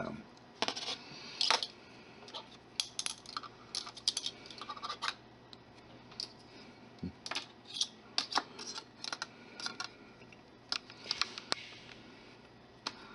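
Steel wire being twisted with needle-nose pliers: a run of irregular light metallic clicks and ticks, some in quick clusters, as the wire and the pliers' jaws shift against each other.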